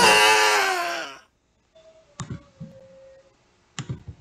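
The tail of a long shouted cartoon voice, falling in pitch and fading out just over a second in. Then near quiet broken by two sharp computer mouse clicks about a second and a half apart.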